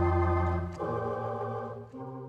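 Wurlitzer theatre pipe organ playing sustained chords, shifting to a new, quieter chord about three-quarters of a second in and changing again near the end.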